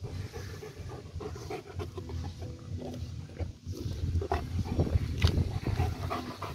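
A German Shepherd panting close up while its coat is rubbed with a grooming glove, with rough, irregular rubbing and breathing noise.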